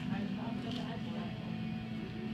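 Restaurant background: a steady low hum with faint voices from other tables.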